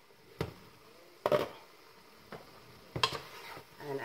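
Cookware handling: a glass pot lid lifted off a pot and set down on a glass-ceramic cooktop, with three separate knocks and clinks, the loudest a little over a second in.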